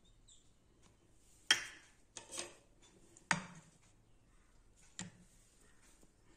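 Small stainless steel ice cream moulds being handled on a wooden chopping board: four sharp knocks and clinks spread over a few seconds, the first the loudest.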